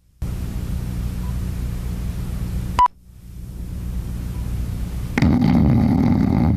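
Steady hiss with a low hum in the gap between two recorded TV commercials, broken by a sharp click a little before halfway; after the click the hiss drops away and slowly swells back. The next commercial's sound cuts in about five seconds in.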